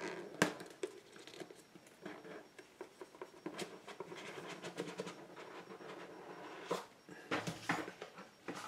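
Scattered clicks, knocks and faint rustling of boxes and packaging being handled on a table, with a sharp click about half a second in and a cluster of knocks near the end.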